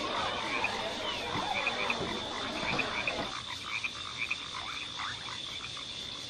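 Animal calls: short chirps repeating in clusters over a steady high whine.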